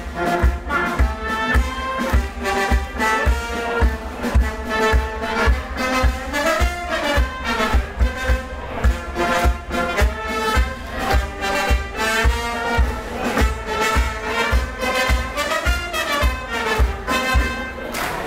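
Brass band with saxophone, trumpet and drums playing a lively tune over a steady beat, about two low drum beats a second.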